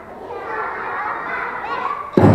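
Children's voices chattering and calling.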